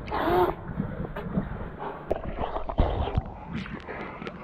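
Seawater lapping and sloshing around a camera held at the surface, with scattered small splashes and knocks. A short pitched cry sounds in the first half-second.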